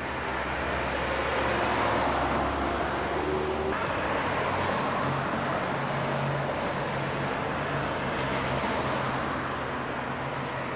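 City street traffic: a steady wash of passing cars' engines and tyres with a low engine drone underneath. The drone changes abruptly a little under four seconds in.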